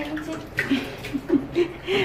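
Kitchen tap running water into a stainless steel sink while dishes are being washed.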